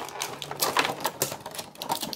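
Clear plastic packaging tray crackling and clicking as a toy figure and its gun are pried out of it: a rapid, irregular run of sharp plastic clicks.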